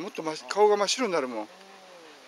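A person's voice in short, bending, speech-like phrases for about a second and a half, then a faint steady hum.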